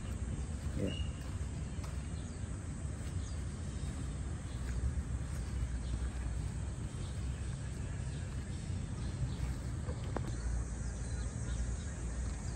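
Outdoor background noise, mostly a low, uneven rumble, with a short high chirp about a second in.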